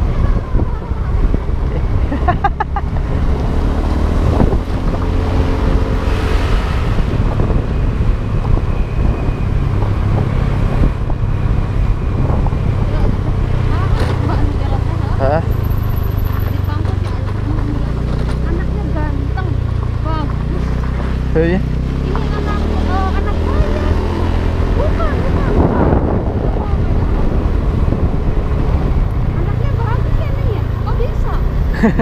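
Small motorcycle engine running while riding, its note rising and falling in pitch around the middle, with wind buffeting the microphone.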